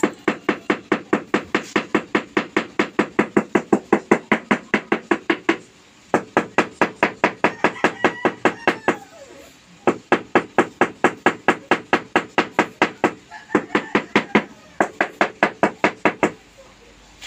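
A porcelain floor tile being tapped down into its mortar bed with the end of a wooden-handled tool, to seat and level it. The tapping runs in quick, even knocks, about four a second, in bursts of a few seconds with short breaks between.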